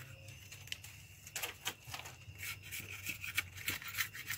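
Knife blade cutting and shaving thin strips of carrizo cane: a faint series of short, uneven scraping strokes, coming thicker in the second half.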